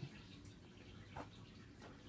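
Near silence: faint room tone with one soft, brief tick a little over a second in.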